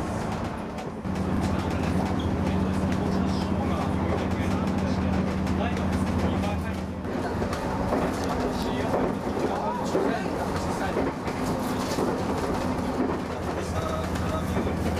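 Running noise inside a moving JR East HB-E300 series hybrid train (Resort Asunaro): a steady low drone that sets in about a second in. Over the second half, voices talk in the car above it.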